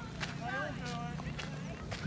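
Footsteps walking on a dirt path, about two steps a second, with people's voices in the background.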